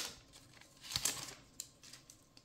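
Foil-lined wrapper of a Magic: The Gathering booster pack crinkling as the cards are slid out of it: a sharp crackle at the start, then a softer rustle about a second in.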